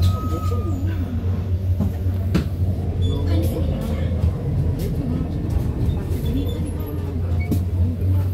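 Inside a city bus: the bus's steady low engine drone and cabin rumble, with an occasional rattle or click.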